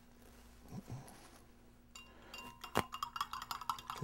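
Light clicks and clinks of a thin stirrer knocking against the inside of a drinking glass as indicator drops are stirred into water, starting about halfway through and coming quicker toward the end. A couple of faint soft knocks come about a second in.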